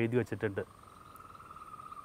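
A faint, steady, high-pitched animal trill, heard once the man's speech stops about a third of a second in.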